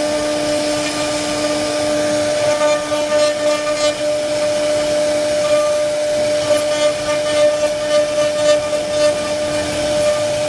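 CNC router spindle running, its end-mill bit carving a relief pattern into solid wood: a steady whine over the rasping noise of the cut.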